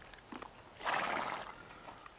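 A horse snorts once about a second in, a breathy burst lasting about half a second.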